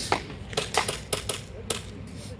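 Airsoft guns firing: an irregular string of sharp snaps, about eight in two seconds.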